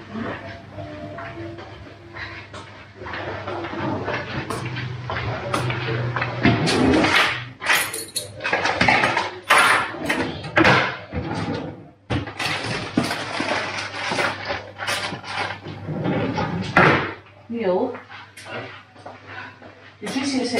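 Indistinct talk mixed with a long run of rustling and clattering handling noise, over a low steady hum.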